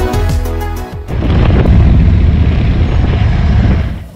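Background music plays for about the first second, then gives way to loud wind rush and engine noise from a moving motorcycle, with heavy low buffeting on the microphone, which cuts off abruptly just before the end.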